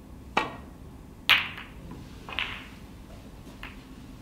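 Snooker shot: the cue tip clicks against the cue ball, and about a second later the cue ball hits the pack of reds with the loudest crack. Two further, softer clicks follow as the scattered balls strike each other.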